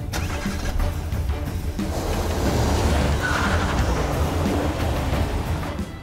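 Dramatic background music over a car setting off and driving away, with a rushing noise swelling from about two seconds in and stopping abruptly near the end.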